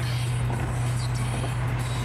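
Car interior noise at a steady highway cruise: an even low engine drone with tyre and road noise over it.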